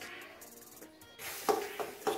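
Background music, then near the end a scrape and two sharp metal knocks as a spoon stirs greens in a stainless steel wok.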